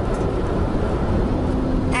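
Steady road and engine noise of a moving car, heard inside the cabin.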